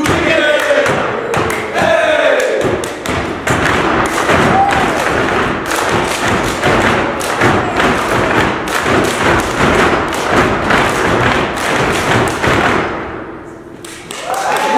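A step team stomping and clapping a fast rhythmic routine, the strikes coming in steady, dense patterns; it dies away shortly before the end.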